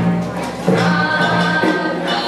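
An ensemble of Okinawan sanshin (three-stringed snakeskin lutes) plucked together in an Okinawan folk song, with a group of voices singing in unison over them.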